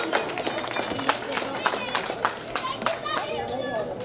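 Scattered hand clapping from a small group of children and adults, with voices talking over it. The clapping dies away near the end.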